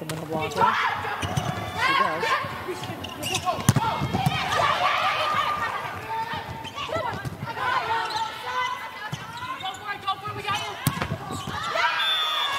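Indoor volleyball rally: the ball struck sharply several times on the serve, passes and attacks, the loudest hit a little under four seconds in, over a crowd shouting and cheering in the arena.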